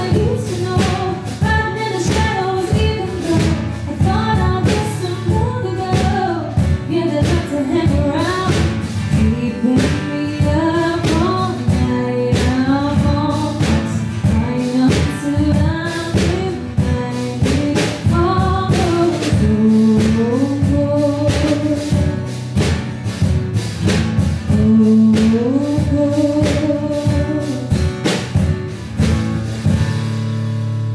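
Live country song: a woman singing over a strummed acoustic guitar, with a drum kit played with sticks, snare hits and cymbal keeping a steady beat.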